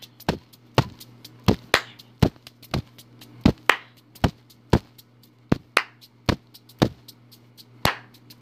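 A looping percussive beat of sharp clicks, four hits in a pattern that repeats every two seconds, over a steady low hum.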